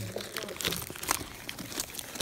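Gift wrapping paper crinkling and tearing as a present is unwrapped: a quick run of irregular crackles.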